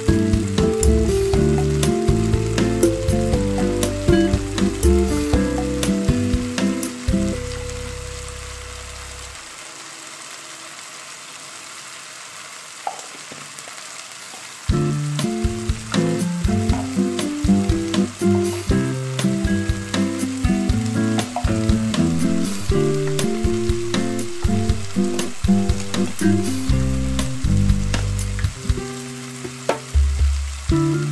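Cut green beans frying in oil in a wok: a steady sizzle with fine crackles. Background music plays over it, dropping out for about five seconds in the middle, when only the sizzle is heard.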